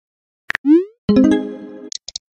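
Chat-message sound effect: a click and a quick rising 'bloop' about half a second in, then a bright chime of several tones that rings down, with a couple of short high ticks at the end.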